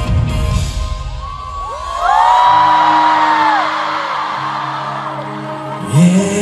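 Live pop concert music heard from among the audience: the beat drops out about a second in, leaving sustained low synth chords, while fans scream in high, overlapping rising-and-falling wails. A loud hit comes at the very end.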